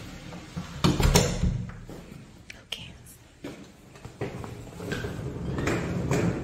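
A door handled and opened: a knob rattling and a few knocks and thuds about a second in, with more clicks a little later. Near the end a rolling suitcase's wheels rumble over a tile floor.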